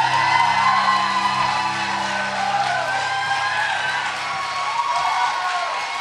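Live band's low sustained drone ending a song, fading out about halfway through, while audience members whoop and cheer over it.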